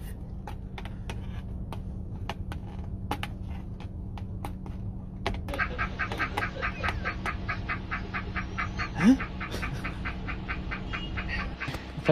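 A steady low hum with scattered light clicks; from about halfway a man's fast, cackling laughter runs on, with one short rising cry in it near the end.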